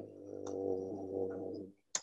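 A man's voice holding one steady, wordless hesitation sound for about a second and a half, followed near the end by a single sharp click.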